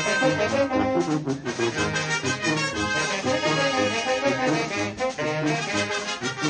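Live brass band playing a rhythmic tune, with trombones leading over saxophones and clarinets.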